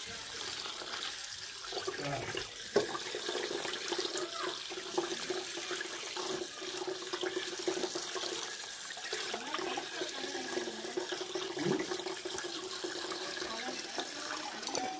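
Tap water running steadily and splashing onto whole tilapia in a steel plate as they are rinsed by hand over a stainless-steel sink. A single sharp knock about three seconds in.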